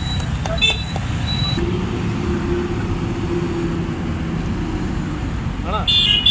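Road traffic on a busy highway running close by: a steady low rumble of passing vehicles, with one vehicle's engine drone coming in about a second and a half in and fading near the end.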